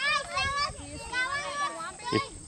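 A young child's high-pitched voice, chattering continuously with short breaks.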